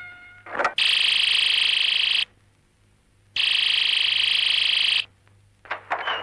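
An electric bell rings twice, each ring about a second and a half long with a short pause between, a steady rapid trill.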